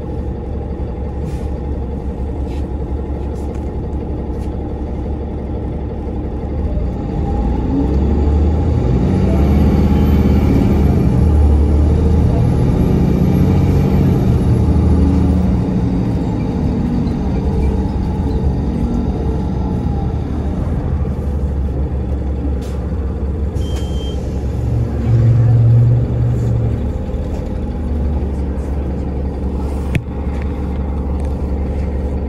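Inside a city transit bus: the engine and drivetrain run with a steady low hum, rising as the bus pulls away from a stop about seven seconds in, with a thin high whine as it gathers speed and road noise while it travels.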